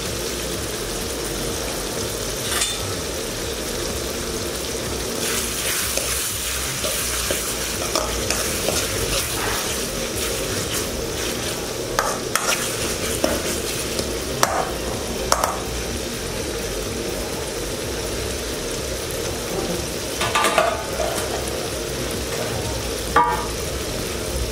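An onion, tomato and green chilli masala sizzling as it fries in oil in a metal kadai. A utensil stirs it, knocking and scraping against the pan a few times, mostly in the second half.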